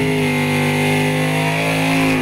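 A Mopar Drag Pak Challenger's 426 Hemi V8 held at steady high revs during a burnout, the rear tyres spinning and smoking.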